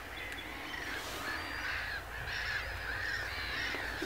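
A flock of black-headed gulls calling, many harsh overlapping calls at a distance.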